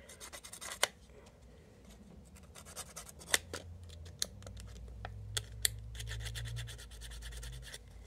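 Fine sandpaper rubbing on a small plastic Brickarms Modcom pin, sanding it down for a snugger fit: a faint, irregular scratching with scattered sharp little ticks.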